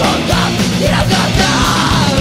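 A hardcore punk band playing loud and dense, with a yelled lead vocal over the band.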